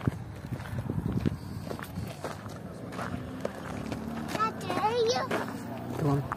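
Footsteps walking, with young people's high voices chattering and calling out from about four seconds in.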